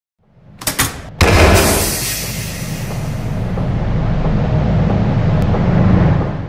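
Produced logo-intro sound effect: a few sharp clicks, then a heavy hit about a second in, followed by a rumbling swell that builds toward the end.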